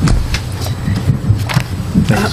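A steady low rumble with a few short clicks, in the pause between remarks.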